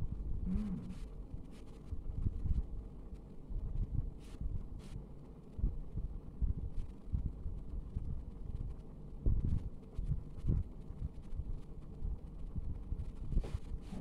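Low, uneven rumbling noise with a few faint clicks of tarot cards being handled and laid out on a desk. A brief 'mm' hum comes just after the start.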